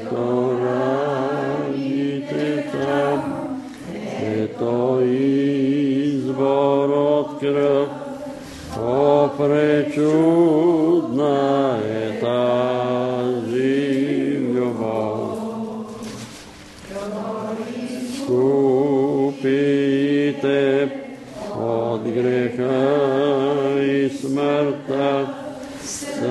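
Several voices singing a slow hymn in long held notes, with short breaths between the lines.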